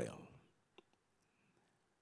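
Near silence: room tone, with the end of a man's spoken word dying away at the start and one faint click just under a second in.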